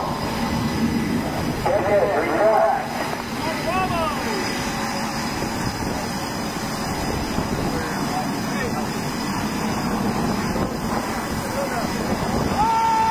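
Steady rushing noise of jet aircraft engines and wind on a carrier flight deck, with a brief shouted voice about two seconds in.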